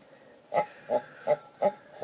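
Paintbrush strokes laying acrylic paint onto a ribbed tin can: five short brushing sounds about three a second.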